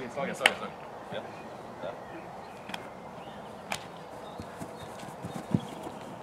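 Open-air training-ground ambience: a few sharp taps and knocks, the loudest about half a second in and a dull thump near the end, over a steady hiss and faint voices.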